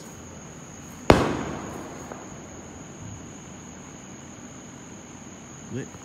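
A single loud bang about a second in, echoing away over the next second, over a steady high chirring of crickets.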